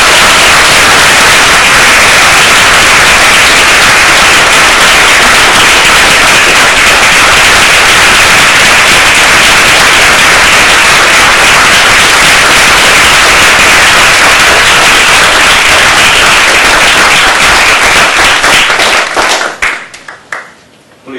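Audience applause, loud and sustained, tapering off near the end.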